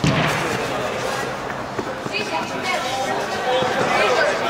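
Indistinct chatter of several people in a large indoor sports hall, with no clear words, opening with a sudden sharp thump.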